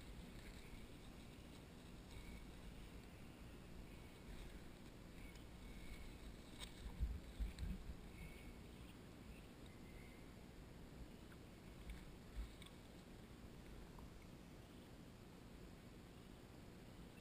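Faint, muffled rumble of riding in a seat on an elephant's back, with a cluster of soft knocks about seven seconds in and another near twelve seconds.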